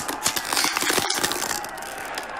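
A small plastic water bottle crackling as a hand squeezes and twists it: a rapid, irregular run of crinkles and pops.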